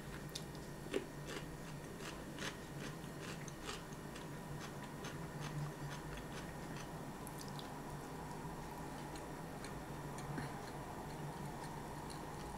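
Faint close-up chewing of a cucumber slice: soft crunches and wet mouth clicks, thickest in the first few seconds and thinning out later, over a steady low hum.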